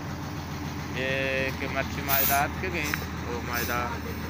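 People's voices in short spoken stretches, one a held tone about a second in, over a steady low rumble.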